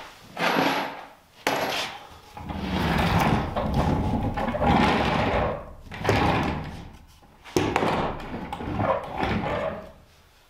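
A homemade 2x4 dolly on old metal casters being rolled and pushed about on a plywood floor, in several rough, rattling bouts of a second or more each, after a few sharp knocks at the start. The casters are dry and unoiled and swivel stiffly, so it rolls clunkily.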